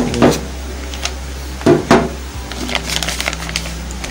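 Clear plastic bags around two replacement washing-machine shock absorbers crinkling and clicking as they are handled: a few sharp crackles, then a quicker cluster near the end, over a steady low hum.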